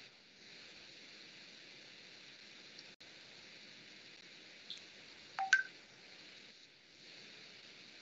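Faint steady hiss of an open microphone on a video call, with a short two-pitch electronic beep about five and a half seconds in and a fainter blip just before it.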